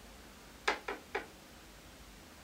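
Three short clicks in quick succession, about a quarter of a second apart, the first the loudest, over faint room noise.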